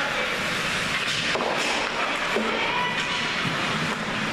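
Steady rushing noise of an indoor ice hockey rink during youth play, heard through the rink glass: skates cutting the ice under a continuous arena hum.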